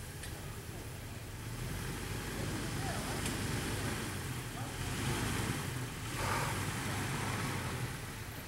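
Jeep Wrangler TJ engine running at low revs as it crawls over rock, growing louder in the middle of the stretch as it takes more throttle.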